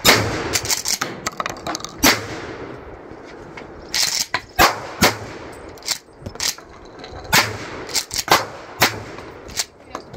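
A shotgun fired repeatedly, about nine loud shots spaced roughly one to two seconds apart, each followed by a short echo. The loudest shot comes right at the start.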